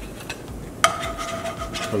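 A slotted spatula knocks once against a nonstick frying pan a little under a second in, and the pan rings on for about a second.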